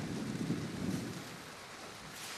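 A low rumble of thunder that sets in suddenly and fades away after about a second and a half.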